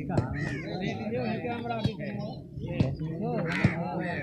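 Background chatter of several men talking at once, none close by, with a couple of short harsh calls rising above it.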